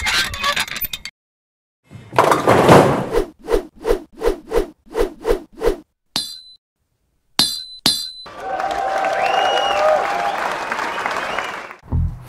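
Sequence of intro sound effects: a short noisy burst, a crash about two seconds in, a run of about eight evenly spaced knocks at roughly three a second, a few sharp clinks with a brief ringing ping, then about three and a half seconds of steady noise like applause near the end.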